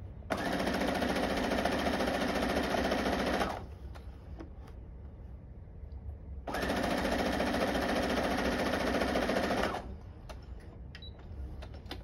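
Electric sewing machine stitching a straight seam through quilt strips in two runs of about three seconds each. Each run starts and stops abruptly, with a pause of about three seconds between them.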